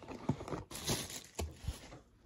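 Cardboard box and paper and plastic packaging being handled: irregular rustling and crinkling with a few light knocks.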